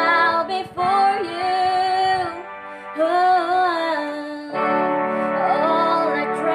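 Female voices singing a slow worship song over sustained chords from a Yamaha PSR electronic keyboard, with a new chord coming in about four and a half seconds in.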